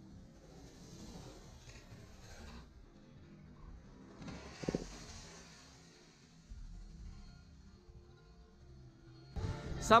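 Quiet background music, with two spells of skis hissing across packed snow, about a second in and again around four seconds in, and a short thump near the middle. A man starts talking near the end.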